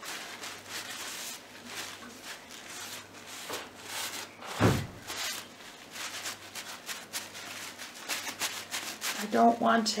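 Cloth rubbing along a freshly painted wooden stick in repeated short wiping strokes, taking off the excess paint, with a single thump near the middle.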